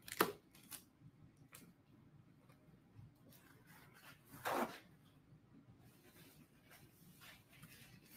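A short sharp crunch just after the start as a bite is taken from a crusty seeded sandwich roll, then a brief rip of a paper towel being torn off its roll about four and a half seconds in. Otherwise only faint handling rustles.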